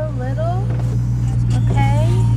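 Steady low idle of a Dodge Charger Scat Pack's 6.4-litre 392 HEMI V8, heard from inside the cabin while the car sits still.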